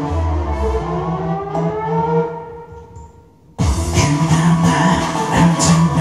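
Karaoke backing track intro: sustained melodic lines that rise and fall, fading away. Then about three and a half seconds in, the full band comes in suddenly and loud with a steady beat.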